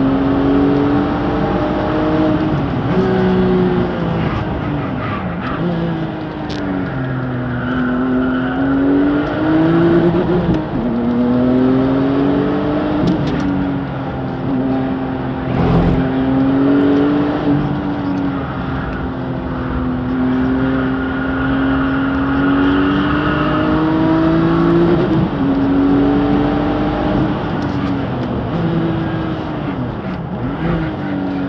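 Tuned Porsche racing car's engine heard from inside the cabin at speed on a race track. Its pitch climbs and falls over and over through acceleration, gear changes and braking into corners, with a brief knock about halfway through.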